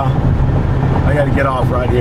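Steady low rumble of tyre and wind noise inside the cab of a converted electric pickup at highway speed. A voice speaks briefly about halfway through.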